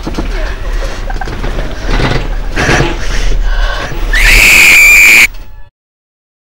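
A woman's distressed crying and moaning, then a loud, shrill scream held for about a second near the end, cut off suddenly.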